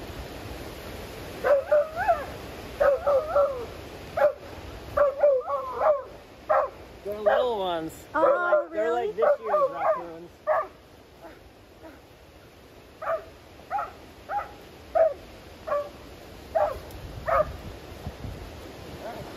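Husky-type dog whining and yipping in excitement while straining after raccoons: short rising and falling cries, a run of longer wavering whines in the middle, then single yelps about every half second to a second near the end.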